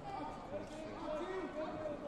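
Overlapping voices of several people talking in a large sports hall.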